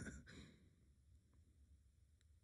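Near silence, apart from a person's faint breathy exhale that fades out within the first half-second.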